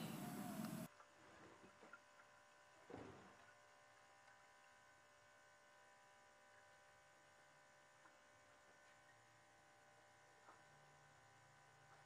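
Near silence with a faint steady hum. A low hiss in the first second cuts off suddenly.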